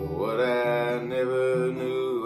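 Man singing long drawn-out notes without clear words, sliding up into the first one, over strummed acoustic guitar.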